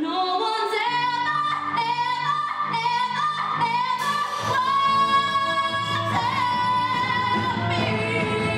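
Live musical-theatre song: a female voice sings a melody of held notes over band accompaniment, which turns fuller and louder, with a bass line, about halfway through.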